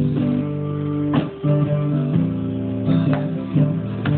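Acoustic guitar strumming slow chords, with a sharper stroke at each chord change and no singing.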